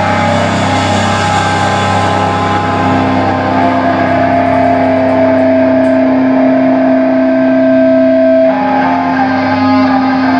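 Metallic hardcore band's distorted electric guitar and bass holding a droning chord without drums. Steady higher tones sustain over it for several seconds, the highest one dropping away near the end.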